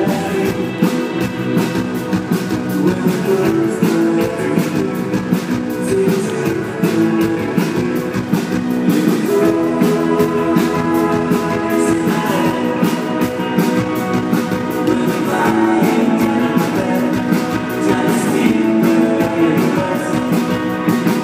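Live indie rock band playing a song with electric guitar, bass guitar and drum kit at a steady driving beat, heard from within the audience in a large hall.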